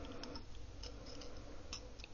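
Thin craft wire being twisted together around the neck of a small glass jar, giving a few faint, irregular ticks and clicks as the wire catches against the glass.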